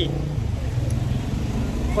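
Steady low rumble of a road vehicle's engine in the street.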